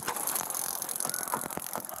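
Rattling, clattering knocks picked up on a police body camera's microphone as officers struggle at a car door and window, with many irregular sharp ticks and no clear voice.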